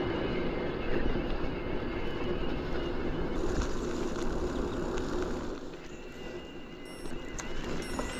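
Mountain bike riding along a gravel and dirt path: a steady rushing noise of tyres rolling over the gravel, easing off for a second or two about six seconds in.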